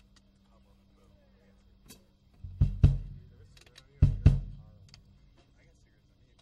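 Drum kit struck four times in two quick pairs about a second and a half apart, each hit deep and loud with a short ring, over a faint steady amplifier hum.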